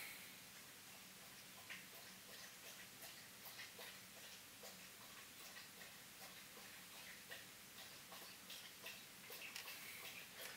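Faint, irregular soft clicks of a pet lapping water, growing busier near the end, over near-silent room tone with a faint steady hum.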